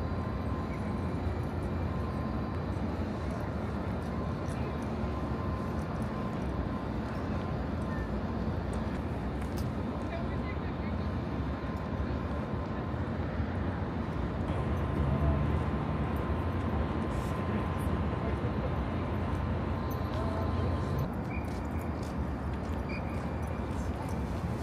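Steady open-air background rumble with the murmur of distant voices, and a faint steady high tone that stops about 21 seconds in.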